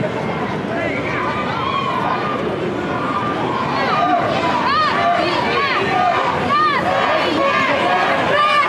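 Rugby crowd with many voices shouting and calling out at once, the calls overlapping over a steady stadium hubbub. The shouting gets busier about halfway through.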